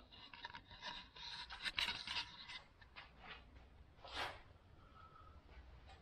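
Faint, irregular scraping and rubbing contact sounds through the first two and a half seconds, with one brief soft scrape about four seconds in.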